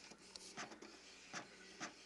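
Lexmark Z53 inkjet printer printing faintly, its print-head carriage with the colour cartridge shuttling across, with a few short clicks.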